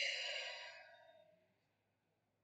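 A woman's long sigh: one breathy exhale that starts suddenly and fades out over about a second and a half.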